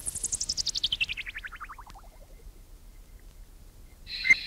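Electronic chirping sweep: a rapid run of short tone pulses, about a dozen a second, falling steeply from very high to low pitch over about two seconds and fading out.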